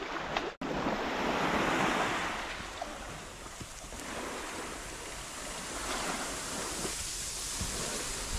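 Small waves washing onto a sandy beach: a steady hiss of surf that swells and eases, with some wind on the microphone.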